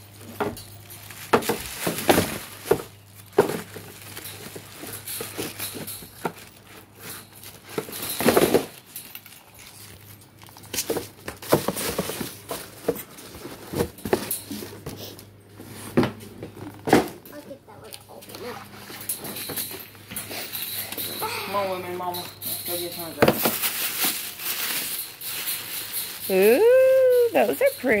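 Cardboard shoe boxes and tissue paper being handled: irregular knocks, taps and rustling as lids go on and boxes are moved about. A high-pitched voice comes in near the end, the loudest sound.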